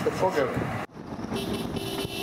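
A man's voice cut off abruptly about a second in, followed by the steady running noise of a road vehicle driving along.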